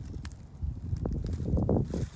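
Footsteps on a leaf-covered dirt trail, a few soft scuffs, under a low rumble of wind on the microphone that grows louder from about half a second in.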